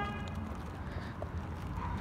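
Footsteps of a person walking quickly on a concrete sidewalk, over a steady low rumble on the microphone.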